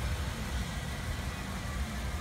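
The 1996 Chevrolet Impala SS's 5.7-litre (350) V8 idling steadily and quietly on its stock exhaust.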